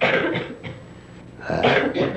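A man coughing and clearing his throat close to a microphone: a sudden harsh burst at the start that fades over half a second, and a second one about a second and a half in.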